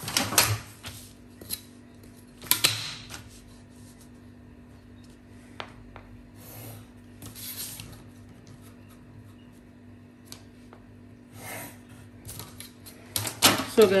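Ruler and pencil being worked on pattern paper: a few knocks and rustles as the long plastic ruler is laid down and shifted, and soft scratching of a pencil drawing lines along it. A faint steady hum sits underneath.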